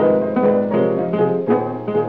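Late-1920s blues recording, piano and acoustic guitar playing an instrumental passage with no singing, notes struck and plucked in a steady rhythm. The sound is the dull, narrow-range sound of an old 78 transfer.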